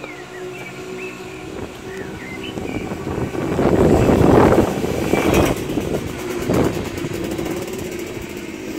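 A motorbike passes on the street, its engine growing louder to a peak about four seconds in and then fading away.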